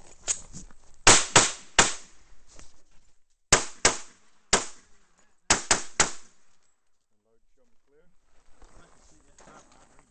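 Semi-automatic pistol fired in three quick strings of about three sharp shots each, between about one and six seconds in.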